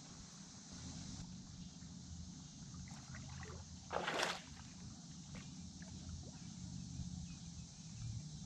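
A hooked blue catfish being reeled in to a boat: faint reel clicks, then a short splash about four seconds in, over a steady low rumble.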